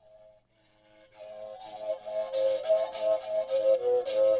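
A Xhosa mouth bow (umrhubhe) being played: a scraped string gives a rhythmic stroking, and an overtone melody rocks between two close notes. It starts faintly and becomes full and loud about a second in.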